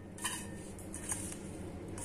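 Fingers mixing dry ground spice powder in a stainless steel bowl: a faint, soft scraping and rustling, with a couple of light brushes against the metal.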